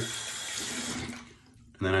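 Water running from a bathroom sink faucet, a steady rush that fades out and stops a little over a second in.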